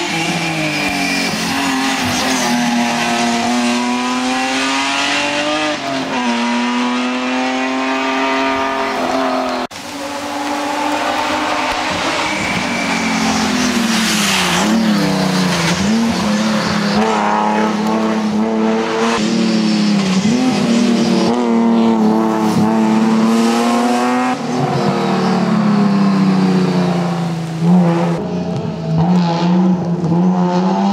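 BMW M3 E36 race car's straight-six engine revving hard at close range, its note repeatedly climbing and then dropping as it works up through the gears and comes off the throttle. Tyres hiss on the wet road underneath.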